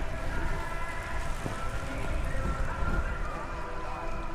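Steady low rumble of wind and road noise from a recumbent trike moving along the track, picked up from behind its windshield canopy.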